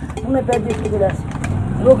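Women talking in short phrases, with a low engine hum from a passing or idling vehicle coming in about one and a half seconds in.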